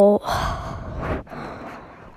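A person's long breathy sigh, following on from a drawn-out "oh" that ends right at the start and fading away over about a second.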